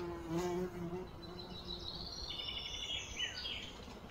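A flying insect buzzing close to the microphone, a steady drone that fades out about a second and a half in. A few high, thin chirps follow around two to three seconds in.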